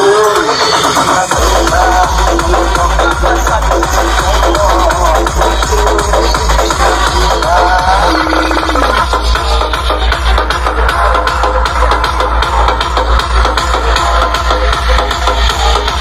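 Electronic dance music playing loudly through a large outdoor DJ speaker stack, with a heavy, fast-repeating bass beat that kicks in about a second and a half in.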